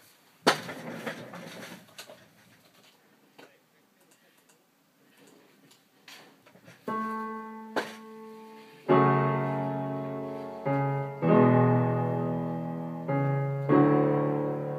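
Yamaha electronic keyboard playing a piano sound: a single held note about seven seconds in, then loud chords struck every second or two, each dying away. Before the playing there is a knock and some rustling.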